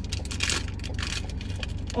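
Crinkly plastic packaging of a small toy blind pack crackling as it is handled and torn open, in quick irregular crackles.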